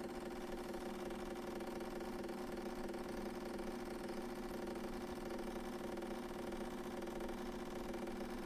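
Decent DE1 espresso machine's pump running with a steady hum as it pulls a shot, the pressure rising into the main extraction.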